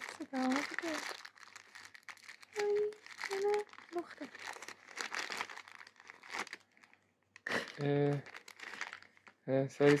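Shiny plastic wrapping of an L.O.L. Surprise doll being crinkled and pulled open by hand, a constant crackle of small crinkles.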